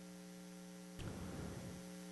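Steady low electrical mains hum from the meeting room's sound system during a pause. About a second in there is a faint click, after which a low rumble of room noise comes up under the hum.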